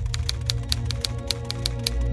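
Typewriter keys clacking in a quick, even run of about six strikes a second, over a sustained low music bed.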